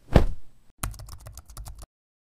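Logo-animation sound effects: a short loud swish-hit at the start, then a quick run of about a dozen sharp clicks like keyboard typing, lasting about a second and stopping abruptly.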